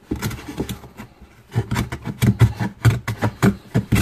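Small metal hand plane shaving the edge of a wooden guitar body blank in quick, short strokes. The strokes are sparse at first, then come about five a second from about a second and a half in.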